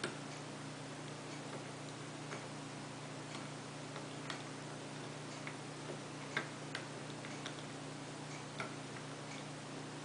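Light, irregular metallic clicks of a lock pick working the pin stacks of a Corbin small-format interchangeable core held under tension, about a dozen over the stretch, the sharpest about six seconds in.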